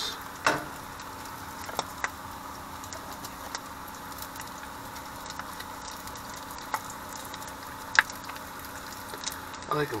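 Bacon sizzling steadily in a stainless steel frying pan over a gas burner, with a few sharp clinks of metal on the pan as the lid comes off and a fork turns the strips, the loudest about eight seconds in.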